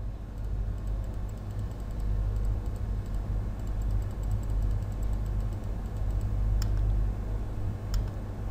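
Light, scattered clicks of a computer keyboard and mouse, with two sharper clicks near the end, over a steady low hum.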